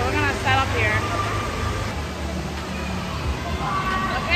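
Indoor water park din: a steady low rumble of water and machinery under echoing voices, with a voice briefly heard near the start.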